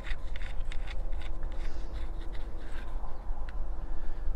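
Light scraping and a few faint clicks as a cable is fitted onto a lead-acid battery terminal by hand, over a steady low rumble.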